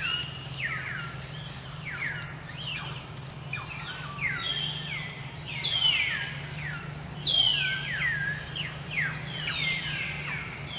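Birds calling over and over in short downward-sliding chirps, several overlapping, with two louder bursts about six and seven and a half seconds in, over a steady low hum.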